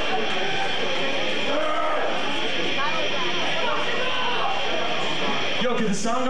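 Indistinct people talking between songs, over the steady hiss and room noise of a live club recording.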